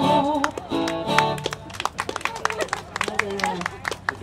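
A live song ends with a last held sung note and guitar chords dying away in the first second or so. Scattered handclaps from a small crowd follow, with a few voices.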